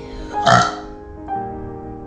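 Soft background piano music, with one short, loud, burp-like sound about half a second in.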